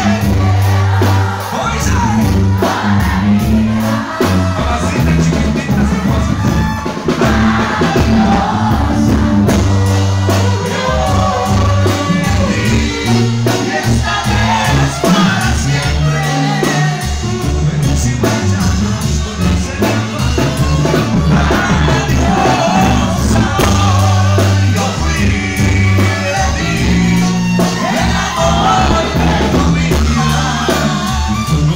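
Live Mexican banda music played loud: singers over clarinets, trumpets and a sousaphone bass line.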